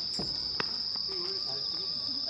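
Crickets trilling, a steady high-pitched tone that does not break.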